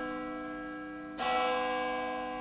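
A deep bell strikes and rings out: the ring of one strike fades away, then a second strike comes just over a second in and rings on, slowly dying.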